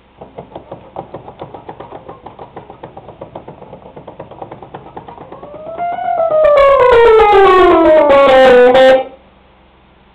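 Rhodes electric piano played through a Tine Bomb preamp: quick repeated notes, about eight a second, for roughly five seconds. A loud tone full of overtones then rises briefly and slides down in pitch for about three seconds before cutting off suddenly.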